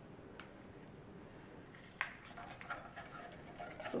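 Quiet handling of a plastic pouring cup of melted soap base and its stirring stick: one sharp tap about halfway through, then a few faint clicks.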